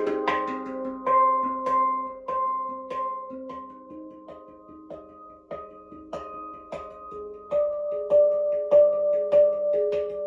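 Handpan tuned to the G Akebono scale, struck with the fingers in an improvised run of ringing, sustained notes. The playing grows softer toward the middle and builds up louder again near the end.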